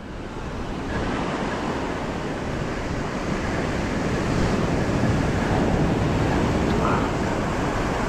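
Ocean surf breaking and washing up a sandy beach, a steady rushing noise that swells a little in the first second, with some wind on the microphone.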